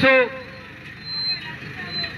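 A man's voice through a handheld microphone, his phrase ending just after the start, then a pause filled with low, even outdoor background noise.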